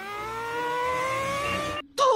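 A cartoon pony's strained vocal sound through gritted teeth: one held tone that climbs steadily in pitch, then cuts off abruptly shortly before the end.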